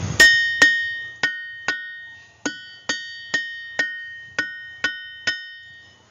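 A ringing rock, a diabase boulder, struck with a hammer about eleven times, roughly twice a second with a short pause about two seconds in. Each blow is a sharp clink followed by a clear, bell-like ring at one high pitch that carries on under the next strike and slowly fades.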